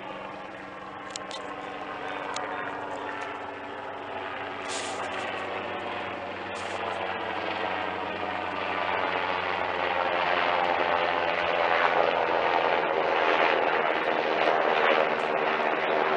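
A motor running steadily with a fixed hum, growing steadily louder throughout, as of a vehicle or aircraft coming closer.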